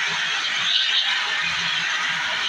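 CO2 fire extinguisher discharging through its hose horn onto a tray fire: a steady, loud hiss of gas rushing out.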